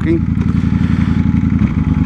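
Motorcycle engine idling steadily under the rider's helmet microphone, its note changing about a second and a half in as the bike begins to move off.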